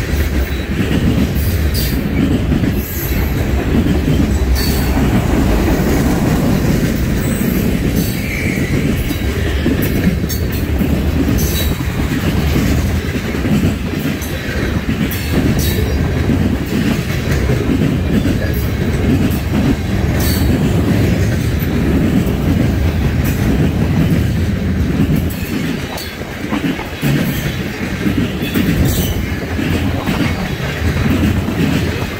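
Freight cars of a Norfolk Southern manifest train rolling past: a steady low rumble of steel wheels on rail, broken by frequent clicks and clanks.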